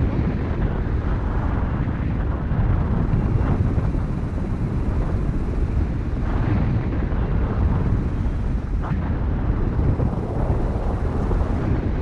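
Airflow of a paraglider in flight buffeting the camera's microphone: loud, steady wind noise, heaviest in the low end.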